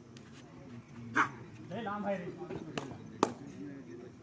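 Players' shouts on a kabaddi court during a raid, with sharp smacks standing out, the loudest about a second in and just after three seconds.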